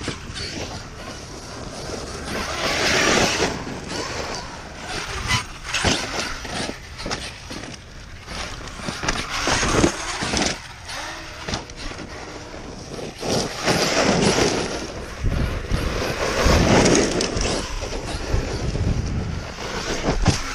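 Electric 1/5-scale RC monster truck (ARRMA Kraton 8S, Hobbywing Max5 ESC and 5687 brushless motor) driving hard over loose dirt and gravel, surging in repeated bursts as the throttle is worked, with tyres churning the ground and short knocks from bumps.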